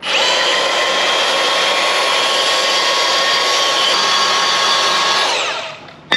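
Cordless compact band saw (Milwaukee M18 FUEL) cutting through eighth-inch-wall 2x3 steel rectangular tube: a loud steady motor whine over the rasp of the blade in the steel. Near the end the motor winds down, its pitch falling, and the sound stops.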